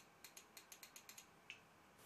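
Faint computer mouse clicks: a quick run of about eight small clicks in just over a second, then a single duller click about a second and a half in.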